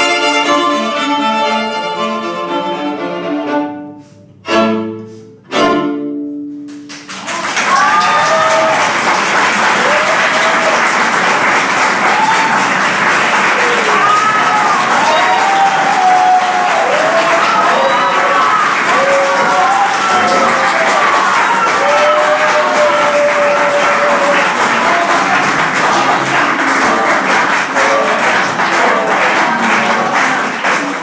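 A string quartet of violins, viola and cello playing a fast passage, ending on two short, loud chords about four and six seconds in. An audience then claps steadily for the rest of the time, with voices calling out over the clapping.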